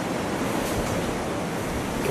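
Steady, even background hiss of room and recording noise. No voice from the demonstrated device can be heard.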